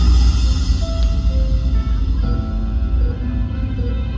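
Live rock band playing: heavy bass and held keyboard notes, with a dark, ominous feel.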